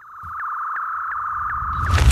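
Electronic sting of a show's closing animation: a steady high sine-like tone fades in with faint regular ticks over it, then gives way near the end to a loud rush of noise.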